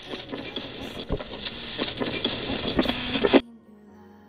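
Rough, muffled camera-microphone audio from an airsoft game: a steady rushing noise with scattered sharp clicks and knocks. About three and a half seconds in it cuts off abruptly, and soft music takes over.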